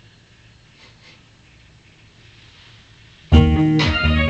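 Faint room tone for about three seconds, then the song's music comes in suddenly and loudly near the end.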